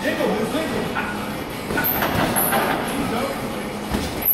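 Two boxers sparring: feet shuffling and thudding on the ring floor and gloves striking, with a sharp thump near the end, over indistinct voices.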